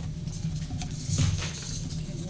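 Paper rustling and light handling knocks as sheets are leafed through at a podium microphone, with a brief louder rustle about a second in, over a steady low hum.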